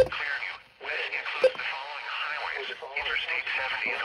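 An automated voice reading a severe thunderstorm warning over a weather radio's small speaker, thin-sounding with no bass. A sharp click at the very start as a button on the radio is pressed.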